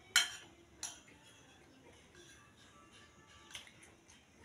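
Metal cutlery clinking against a plate twice in the first second, the first clink the louder. Faint music plays underneath.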